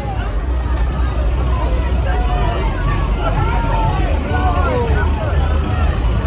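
Deutz-Fahr tractor's diesel engine running close by with a steady low rumble, under crowd chatter and voices calling out.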